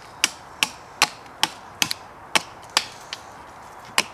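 A hatchet chopping a point onto the end of a green sapling stake: about eight sharp chops of the blade into the wood, roughly two a second.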